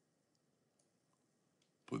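A few faint computer mouse clicks over near silence, then the start of a spoken word near the end.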